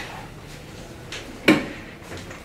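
Sharp knocks of hard objects on a tabletop while documents are handled: a faint one a little after a second in, then a louder one about a second and a half in.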